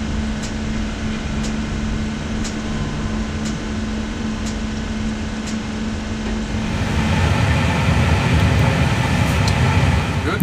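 Igniter plug of a Pratt & Whitney PW1100G engine sparking during an ignition test: a sharp snap about once a second over a steady hum with a low held tone. About seven seconds in the low tone stops and a louder rushing noise builds.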